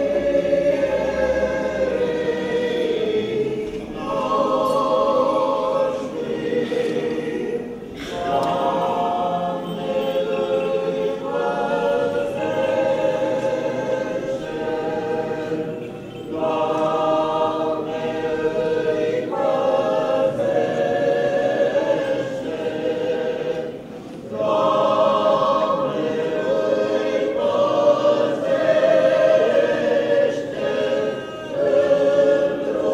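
Choir singing an Orthodox liturgical chant without instruments, in phrases of a few seconds each separated by short pauses.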